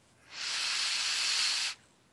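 A steady hiss about a second and a half long, starting and stopping sharply.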